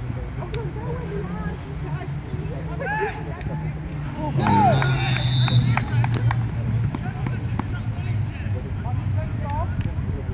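Football players shouting and calling to each other across the pitch, scattered short shouts over a steady low rumble. It gets louder about halfway through, when a brief high-pitched tone sounds.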